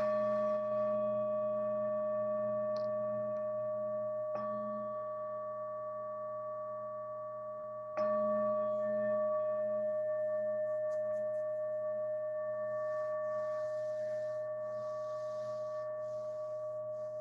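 A meditation bell struck twice, about eight seconds apart, each strike ringing on in a long, slowly fading tone. It marks the close of the meditation and the dedication of merit.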